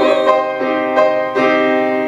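Grand piano playing a run of accompaniment chords, a new chord struck about every third of a second.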